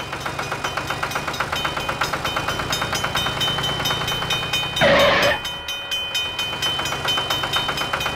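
Battery-powered toy train running on plastic track with a steady, even clatter and a high whine. About five seconds in there is a loud blast about half a second long, like a train whistle.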